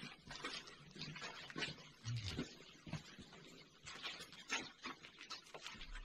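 Faint scattered taps and rustles in a small stone room: shuffling footsteps on a flagstone floor, with no steady rhythm.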